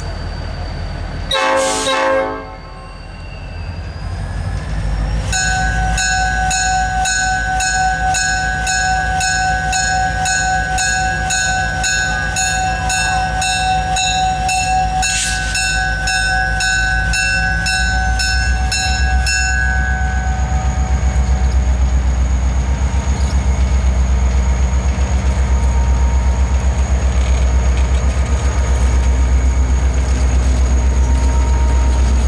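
EMD GP30 diesel locomotive approaching: a short horn toot about a second and a half in, then its bell ringing steadily at about two strokes a second for some fourteen seconds. After the bell stops, the diesel engine's low rumble grows louder as the locomotive draws close.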